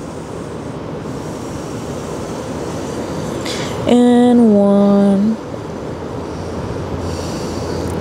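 A woman's audible breath: a short inhale about three and a half seconds in, then one long voiced exhale held for about a second and a half, slightly falling in pitch. Under it is a steady rushing noise from outside that slowly grows louder.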